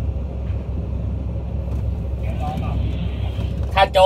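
Steady low engine rumble with no change in pitch, heard through the closed glass of a vehicle cabin.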